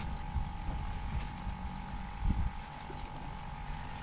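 Wind rumbling on the microphone aboard a small boat on open water, with a steady high-pitched hum throughout and a low knock about two seconds in.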